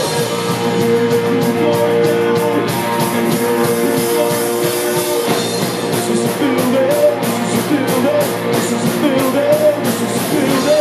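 Punk rock band playing live on electric guitars, bass guitar and drum kit, with cymbals struck throughout. Held notes fill the first half, and a sung vocal line comes in about six seconds in.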